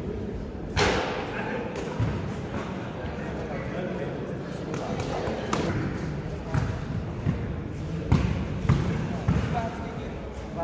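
A basketball bouncing and thudding on a hard court in play, a few irregular thumps with the sharpest about a second in and a cluster in the last two seconds, over a background of voices.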